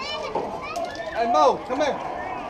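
Several girls' voices talking and calling out at once as the softball teams pass through the post-game handshake line, loudest about one and a half seconds in.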